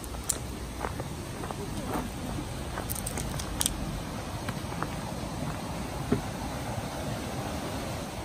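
Steady rushing of a creek beneath a wooden footbridge, with scattered sharp taps of footsteps and a trekking pole on the wooden boards; the loudest tap comes about six seconds in.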